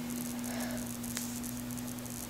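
A steady low hum held under faint hiss, with one faint click a little past a second in.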